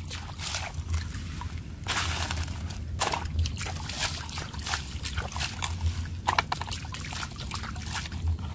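Water sloshing and splashing in irregular strokes as a plastic toy dump truck is swished through a tub of water, rinsing wet sand and gravel out of its bed.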